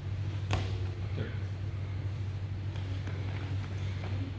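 A steady low hum, with one sharp thump about half a second in as two wrestlers grapple on a wrestling mat.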